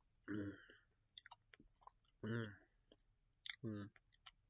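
A man's mouth sounds: soft clicks and smacks of chewing, broken by three short murmured vocal sounds, the first about a quarter-second in, the second past the middle and the third near the end.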